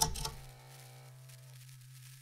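Intro sting under an animated title: a sudden hit whose ringing tones fade out within about a second and a half, leaving a steady low hum.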